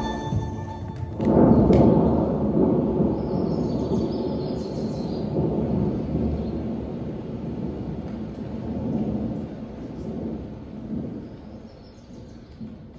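A low, thunder-like rumble in the dance's music track, swelling suddenly about a second in and then slowly dying away, with faint high chimes above it.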